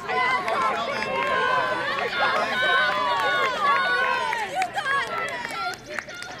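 Several people's voices close by, talking and calling out over one another in a loud, overlapping jumble.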